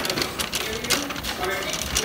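Shopping cart being pushed, its wheels and wire child seat rattling against the plastic basket in a quick, continuous clatter.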